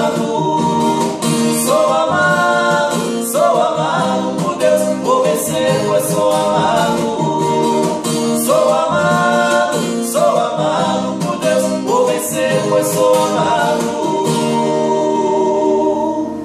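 Two male voices singing a sertanejo gospel song together, accompanied by a strummed acoustic guitar. Near the end the voices hold one long note as the strumming thins out.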